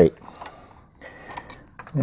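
Faint clicks and light scraping as the LED headlight is pressed into its bucket and the metal retaining ring is handled, a few small knocks about a second in.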